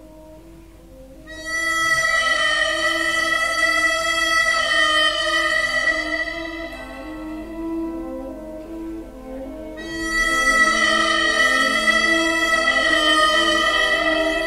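Harmonica playing long held high notes over a lower line that moves step by step. It starts about a second in, drops away in the middle and swells back fuller about ten seconds in.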